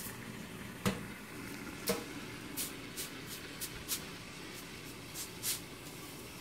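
Hamilton Beach steam iron hissing and spitting vinegar from its soleplate vents, with a string of short crackling pops as it descales, pushing out hard-water lime deposits. Two sharp knocks come about one and two seconds in.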